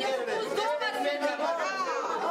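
Speech only: several people talking at once, their voices overlapping.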